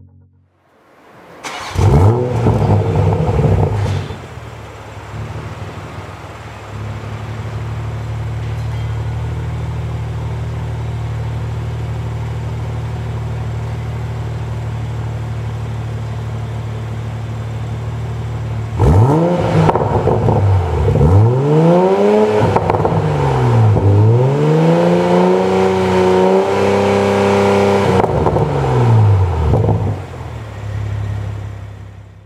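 Toyota GR Supra (A90) engine through an Artisan Spirits full titanium exhaust with variable valves. The engine starts with a short, loud flare of revs and settles to a steady idle. From about two-thirds of the way in it is blipped repeatedly up to around 4000 rpm, each rev rising and falling.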